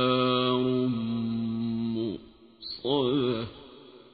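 A man chanting Qur'an recitation (tajwid) in long held notes, then a short wavering, ornamented note about three seconds in that dies away, closing the last verse of the surah.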